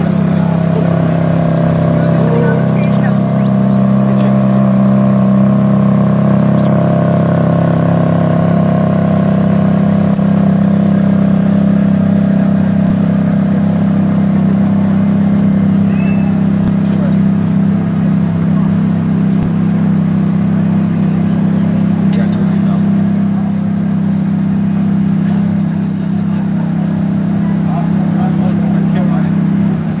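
A vehicle engine droning steadily at an even pitch, with voices over it.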